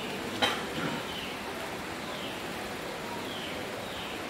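Room tone in a pause of speech: a steady hiss with a single short click about half a second in.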